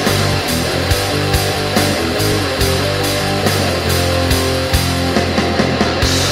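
Instrumental passage of a stoner/doom metal song: heavy electric guitars over a steady drum beat with regular cymbal hits.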